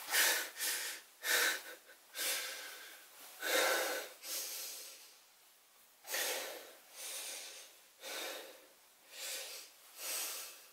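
A man breathing heavily through nose and mouth, each loud breath distinct, quick and ragged in the first few seconds and then slower, about one a second.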